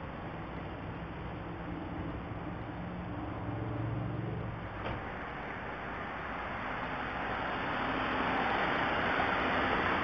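Car engine running and pulling away, growing louder as the car comes closer, with a short knock of a car door shutting about five seconds in. The engine sounds rough, as if about to blow up.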